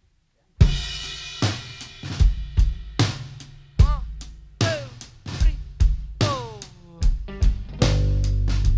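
Live rock band on drum kit and electric guitars opening a song with a series of sharp, accented hits, each left to ring out. The full band settles into steady playing right at the end.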